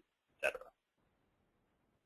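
A man's voice saying one short word, then near silence with only faint room noise.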